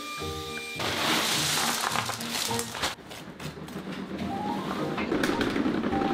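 A cordless handheld vacuum switches on about a second in and runs over loose white pebbles, over background music. In the second half a low rumble builds.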